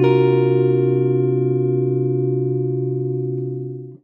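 Telecaster-style electric guitar ringing out a jazz chord voicing, several notes held together and slowly fading. The chord stops just before the end, and the next chord is struck.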